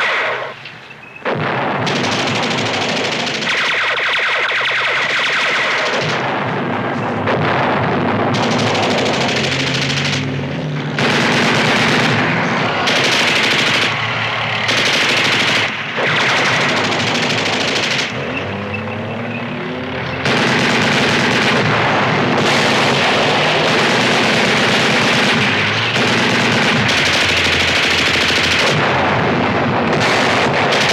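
Rapid machine-gun fire in long bursts that start and stop, with a short lull just after the start, over a steady low drone.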